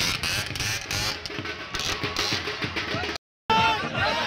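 Music with a fast, steady drumbeat over crowd noise. It cuts out for a moment about three seconds in, and then a crowd is heard shouting.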